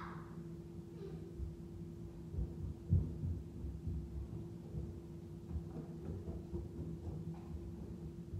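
Muffled low thumps and knocks at irregular intervals, the loudest about three seconds in, over a steady electrical hum.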